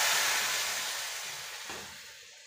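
Hot tempering (tadka) in a steel pot sizzling as dal is poured onto it, a hiss that starts suddenly and dies away over about two seconds.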